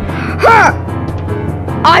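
Background music with a steady beat of about four ticks a second. About half a second in, a cartoon character's voice gives a short, loud gasp-like cry, and speech starts near the end.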